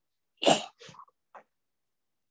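A man's single short, sharp burst of breath about half a second in, like a sneeze, followed by two or three faint breathy sounds.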